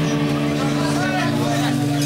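Live rock band's amplified guitar and bass holding one sustained low note, with a voice heard over it.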